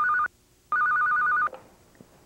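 Electronic office desk phone ringing: a warbling trill that flicks rapidly between two pitches. The tail of one ring is heard first, then one full ring of just under a second.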